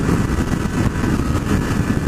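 Honda CB600F Hornet inline-four motorcycle cruising steadily at highway speed: engine and road noise mixed with wind rushing over the bike-mounted camera's microphone.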